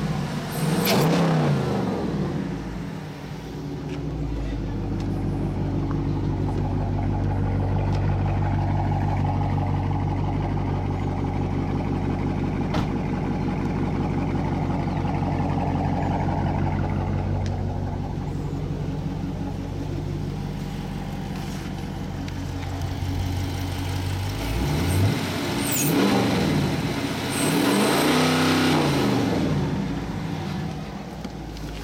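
2021 Dodge Charger's 5.7-litre Hemi V8, fitted with a throttle body spacer, revved once at the start, then idling steadily, then revved twice more near the end.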